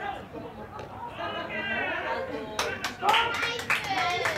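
Voices of baseball players calling out across the field, followed by a quick run of sharp claps in the last second and a half.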